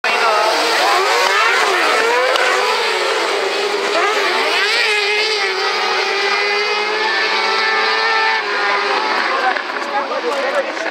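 A pack of autocross buggies racing on a dirt track, several engines revving at once, their pitches rising and falling as they accelerate and shift.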